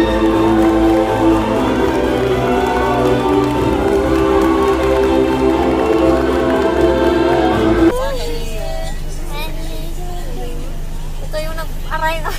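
Music plays for about eight seconds and then cuts off suddenly. After it come a few brief women's voices over the steady low hum of a vehicle's cabin.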